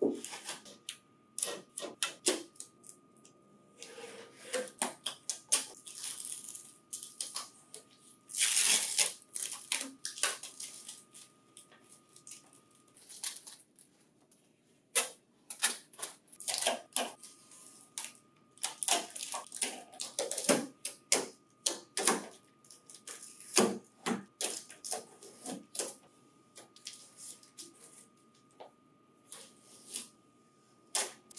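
Plastic packing tape being peeled off and plastic wrapping crinkling as packing material is stripped from a printer finisher: an irregular run of sharp clicks and crackles with a few longer rustles.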